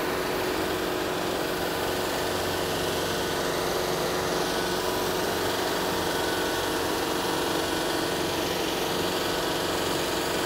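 John Deere 4066R compact tractor's diesel engine running steadily while the tractor drives up with its front-loader pallet forks.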